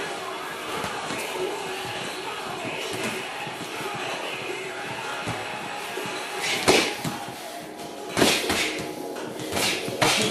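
Music playing, with three sharp smacks in the second half, about a second and a half apart: boxing-glove punches landing during sparring.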